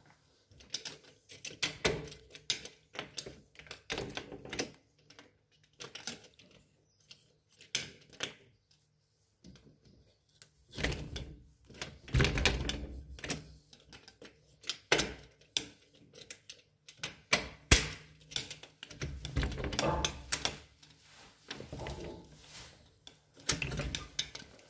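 Irregular clicking and knocking, with a few heavier thumps near the middle and again near the end.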